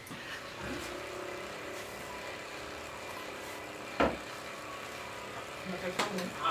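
Steady engine hum of a motor vehicle going by, starting with a brief rise in pitch just under a second in. A single sharp knock about four seconds in stands out above it.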